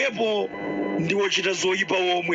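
Speech in Chichewa, with steady background music underneath.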